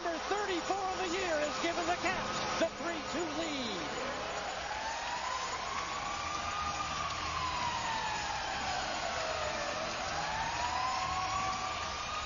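A slowly wailing siren celebrates a goal in a hockey arena, over steady crowd noise. Shouting voices fill the first few seconds. About four seconds in the siren starts: its pitch slowly rises, falls, and begins to rise again near the end.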